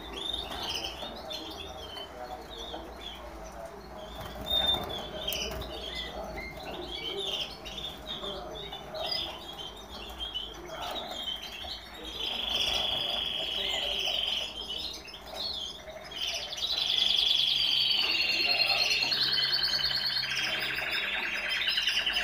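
Caged canaries calling with many short chirps. From about twelve seconds in, canary song joins them: fast trilled rolls, each held on one pitch and then stepping to another, growing louder near the end.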